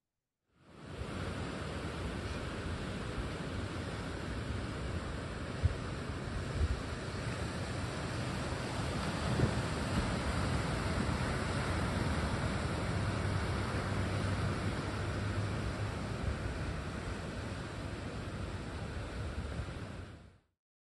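Ocean surf breaking and washing in: a steady rushing wash that swells and eases. It comes in about half a second in, after a moment of silence, and cuts off at the end.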